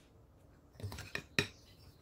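Plastic bench scraper scraping and knocking against a mixing bowl while crumbly scone dough is gathered and pressed together: a short run of clicks about a second in, the sharpest near the middle.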